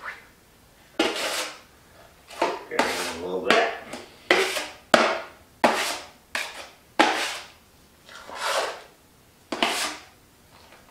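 Drywall knife scraping wet joint compound against the edge of a metal mud pan while loading it: about a dozen short scrapes, each sharp at the start and trailing off.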